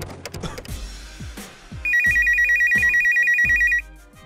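Electronic telephone ring, a loud, fast two-tone trill lasting about two seconds that starts a little before halfway in. A hip-hop beat with deep sliding bass kicks plays under it.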